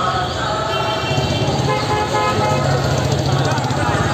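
Busy street din: crowd voices over traffic, with horns tooting on and off.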